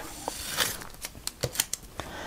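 Blue painter's tape being peeled off a paper card: a soft rasp, then a quick run of sharp crackling ticks in the second half.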